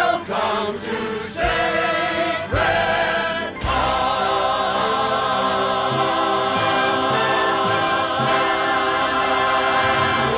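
A large ensemble sings a show tune with musical backing. The voices move through short phrases and then, about four seconds in, hold one long chord.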